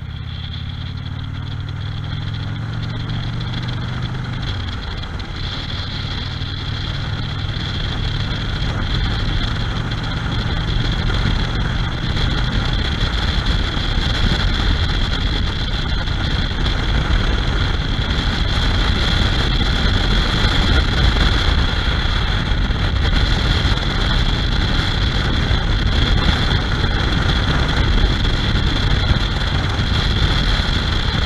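Touring motorcycle under way on an open road. The engine's low, even drone is clear for the first few seconds, then wind and road noise build up over it as the bike picks up speed, and the sound grows steadily louder.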